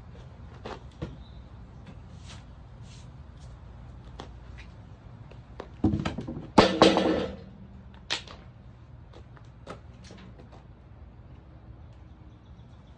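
A freshly sawn ash slab being pulled off the log and dropped: a heavy wooden thud and scrape about six seconds in, followed by one sharp knock about two seconds later. A few light clicks come before and after.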